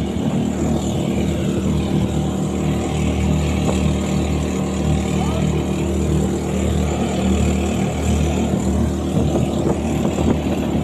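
Outrigger fishing boat's engine running steadily under way, with water rushing along the hull.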